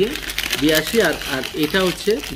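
Paper food wrap (Oddy Uniwraps) crinkling as it is folded and crumpled into a packet by hand, under a man's talking voice.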